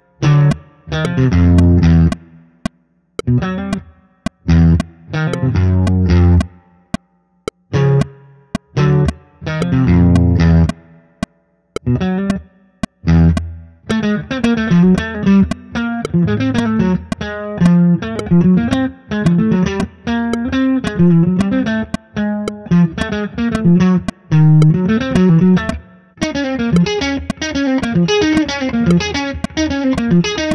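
Semi-hollow electric guitar playing a jazz single-note melody at a tempo of 112, over a steady metronome click. For about the first thirteen seconds the melody comes in short phrases broken by rests, then it runs on as a continuous line of notes.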